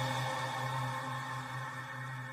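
Title-card music: a held chord of steady tones, slowly fading out.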